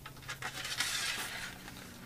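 Small clinks and a light scraping as a carbon arrow shaft is slid along a thin metal guide wire: a few sharp clicks, then about a second of scraping.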